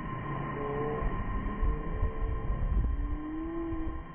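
Wind buffeting the microphone in irregular low gusts, with distant drawn-out voices calling and a steady high hum.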